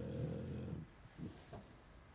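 A man's deep, gravelly voice holding a low hesitation sound for most of a second mid-sentence, followed by a couple of faint low murmurs.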